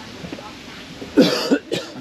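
A person coughing twice close to the microphone, a longer cough a little past halfway followed by a short second one, over faint background voices.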